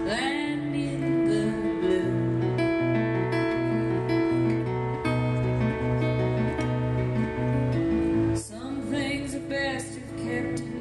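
A woman singing live with her own strummed acoustic guitar in a slow, gentle song, with a brief break in the playing about eight and a half seconds in.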